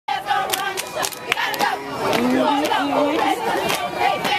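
A crowd of children shouting and chattering at once, many high voices overlapping, with sharp clicks scattered throughout.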